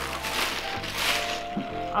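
A plastic bag rustling and crinkling as it is shaken open, fading after about a second, over soft background music.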